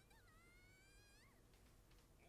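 Near silence: room tone, with a very faint, high, wavering tone lasting about a second and a half.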